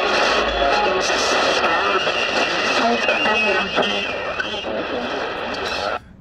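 Shortwave AM reception on a Tecsun PL-990x portable receiver tuned to 7235 kHz in the 40 m band: loud hiss and static with a steady high whistle running through it and faint, garbled voice audio underneath. The sound cuts off abruptly at the very end as the receiver is switched to LSB.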